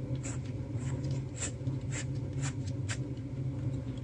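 Plastic LED corn lamp being handled and screwed into a socket: about five sharp clicks and light scrapes, over a steady low hum.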